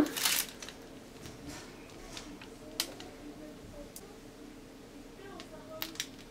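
Quiet room tone with faint, scattered soft clicks and squishing from a piping bag being squeezed to pipe chocolate ganache rosettes onto a cake.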